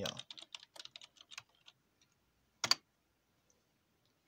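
Typing on a computer keyboard: a quick run of key clicks for about a second and a half, then one louder click about two and a half seconds in.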